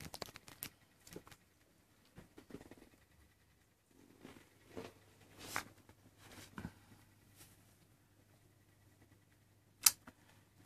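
Faint, scattered rustling and soft taps of young Maine Coon kittens moving about on a fleece towel, with one sharp click near the end.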